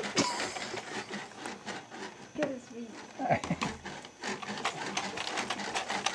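A baby in a strap-hung jumper making a few short falling vocal sounds a little past two and three seconds in, over a run of clicks and rattles from the jumper as it bounces.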